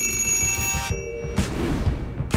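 A telephone bell ringing for about a second, then cutting off; a lower tone and soft low knocks follow.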